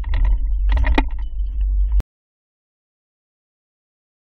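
Low road rumble of a car driving over full-width speed bumps, with two sharp knocks about a second apart as the hitch-mounted two-bike rack and its bikes are jolted; the sound cuts off suddenly about halfway, followed by silence.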